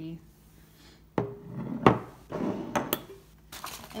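A heavy glass candle jar with a metal lid being set down on a wooden table among other glass jars: a knock about a second in, a louder clink just after, then a few lighter clicks and some handling noise.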